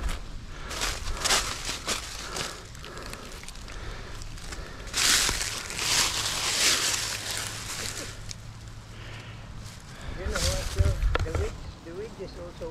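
Footsteps crunching and rustling through dry fallen leaves, irregular throughout, with a louder stretch of rustling for about two seconds midway.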